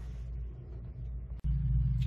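Low, steady rumble with no other clear sound. About 1.4 s in it drops out for an instant at a cut and comes back louder.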